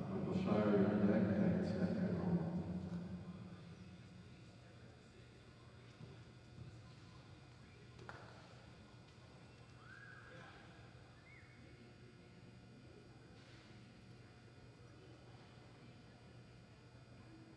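A man's voice over the arena speakers for the first few seconds, then faint arena room tone with a single sharp click about eight seconds in.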